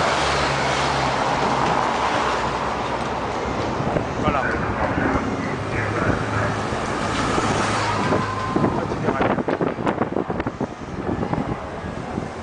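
Escort motorcycles riding past one after another, engines running steadily under road noise, with people talking nearby. About eight seconds in comes a flurry of short sharp knocks.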